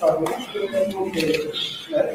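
Indistinct voices of several people talking at once, with no clear words.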